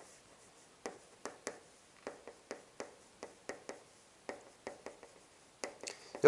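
Chalk writing on a chalkboard: a faint run of short, sharp taps and clicks as each stroke of the characters is written, a few per second and irregularly spaced.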